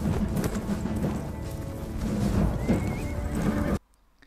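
Film battle-scene soundtrack: music mixed with the dense noise of a charging army. It cuts off suddenly just before the end.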